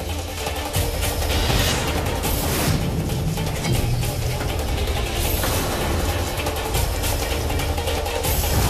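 Dramatic TV-serial background score with a heavy low rumble and repeated percussive hits.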